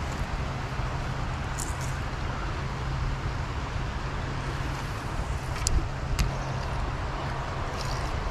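Steady rushing of a shallow creek flowing over its bed, with a low rumble underneath. A few short sharp clicks come through it.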